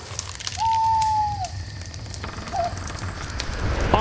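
Campfire crackling with a low rumble underneath. About half a second in, one clear whistle-like tone holds steady for about a second and then drops away.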